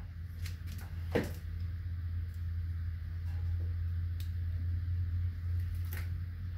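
A steady low hum with a few light clicks and taps over it, the sharpest about a second in and another near four seconds.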